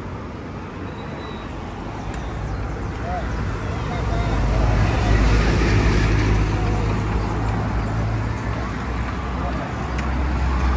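Road traffic noise from a busy city avenue, heard from a moving pedal cart, with a low rumble that swells about four seconds in and eases near the end.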